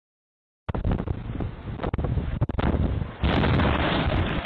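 A brick gable wall collapsing onto the street in strong wind, heard through a doorbell camera's microphone: a sudden rumbling crash of falling brickwork mixed with wind buffeting the microphone. It starts abruptly under a second in and is at its loudest and densest in the last second.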